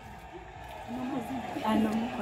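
Quiet background voices talking, mostly in the second half.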